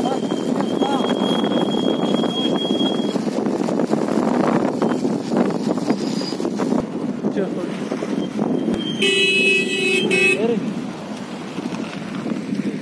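Motorcycle riding along a road with its engine running. About nine seconds in, a vehicle horn honks once for about a second and a half.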